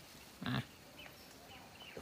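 A man gives one short, sharp "ah!" call, about half a second in, coaxing a water buffalo to come and eat. After it there is only faint outdoor ambience with a few small bird chirps.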